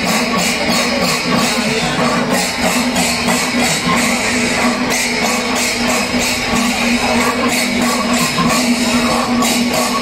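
Loud temple-festival percussion: clashing hand cymbals beating a fast, steady rhythm over drums, with one steady pitched tone held underneath.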